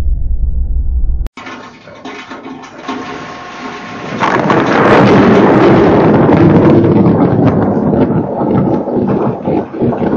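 Low steady drone of an airliner cabin with faint engine tones, cut off sharply about a second in. Then comes a crackling, rushing storm noise that swells about four seconds in and stays loud.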